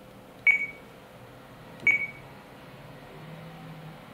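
RadioLink RC8X transmitter giving two short, high key-confirmation beeps, about a second and a half apart, as its touchscreen is tapped to open a menu.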